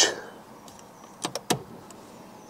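A Fiat 500's ignition key being turned: a few short light clicks about a second in, as the ignition is switched on without starting the engine.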